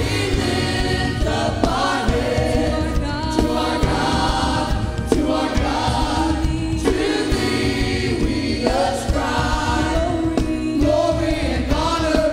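A church praise team of mixed men's and women's voices singing a gospel worship song together, backed by a band with drum kit and bass guitar.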